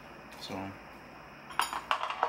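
A quick run of light clicks and clinks from a metal spoon and a plastic yogurt cup being handled, starting about a second and a half in.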